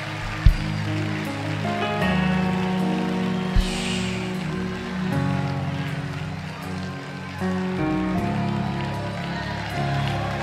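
Church background music of sustained keyboard chords, shifting every second or two, over a steady hum of crowd noise. Two short low thumps fall about half a second and three and a half seconds in.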